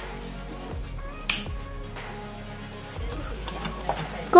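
Soft background music, with one sharp knife stroke through a carrot onto the cutting board about a second in. Near the end, vegetables sizzle as they are stirred in a pot with a wooden spoon.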